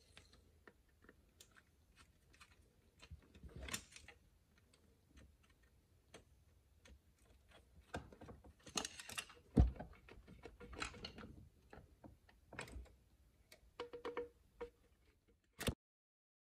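Scattered clicks, taps and rustles of parts and tools being handled, with a louder knock about ten seconds in. The sound cuts off suddenly near the end.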